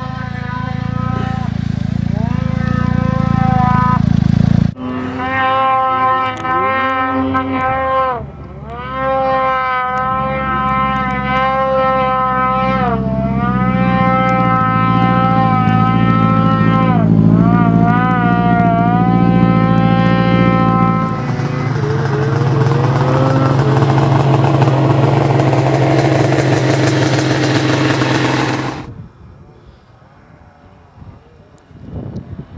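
Polaris RMK 900 snowmobile's two-stroke twin engine held at high revs, a steady high whine that dips in pitch and climbs back several times as the throttle is eased and reapplied in deep powder. About 21 s in it gives way to a louder, rougher rush of engine and wind noise that cuts off suddenly near the end.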